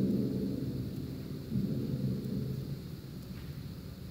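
Chamber orchestra's low sustained notes fading away softly after a loud chord, with a brief low swell about a second and a half in.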